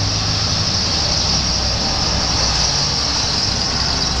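Motor vehicle going by: steady engine hum and road hiss that swells in, holds evenly for several seconds, then eases off.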